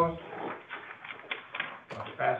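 Faint, indistinct speech in a room, with a few light clicks and taps; a sharper click near the end.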